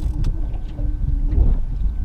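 Wind buffeting an outdoor microphone on a boat: a steady low rumble, with a faint hum in the first half.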